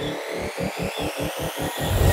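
Electronic news-show jingle building up: a run of low pulses that quicken slightly, under rising sweeps, growing louder toward a heavy hit at the very end.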